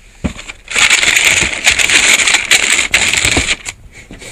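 Tissue wrapping paper in a sneaker box crinkling and rustling as it is handled, a dense crackle starting just under a second in and stopping shortly before the end.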